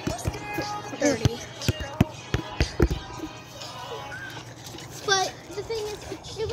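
Sharp slaps of hands on a volleyball, about five spread over the first three seconds, over background music and children's voices.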